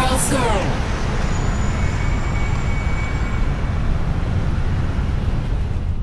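Music ends with a downward pitch slide in the first second, giving way to steady city traffic noise with a low rumble.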